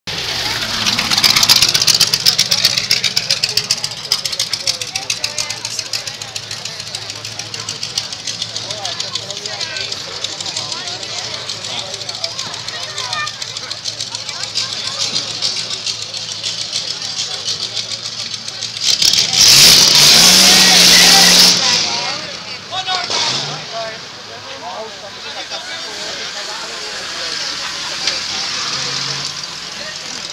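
A vintage open-wheel racing car's engine running with a rapid pulsing exhaust, revved hard in the first seconds. About 19 seconds in it is revved loudly for two or three seconds as the car pulls away from the start, then fades.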